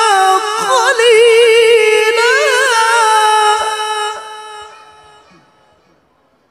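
A male qari's melodic Quran recitation (tilawah) through a microphone: one long high held note with fast ornamental turns and wavers, which fades away about four to five seconds in as the phrase ends.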